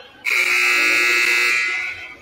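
Gymnasium scoreboard buzzer sounding one loud, harsh, steady blast of about a second and a half, signalling the end of a timeout.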